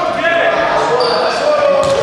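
Futsal game in a large sports hall: players' shouting voices and short, high squeaks of shoes on the wooden floor, with one sharp thud of the ball being struck near the end.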